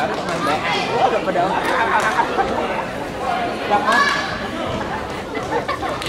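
Voices echoing in a large sports hall: a constant background of chatter, with a loud, high-pitched shout about four seconds in and a few sharp clicks.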